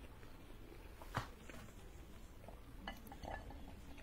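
Dry red clay crunching faintly in the mouth, with one sharp crack about a second in and a few smaller crackles near the end.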